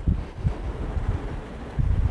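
Wind buffeting the microphone outdoors: an uneven low rumble, with a stronger gust near the end.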